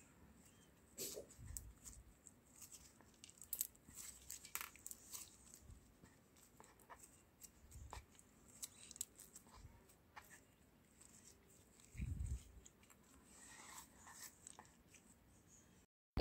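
Faint, scattered crackles and squelches of crunchy slime mixed with homemade clay as it is squeezed and kneaded by hand, with a soft thump about three quarters of the way through.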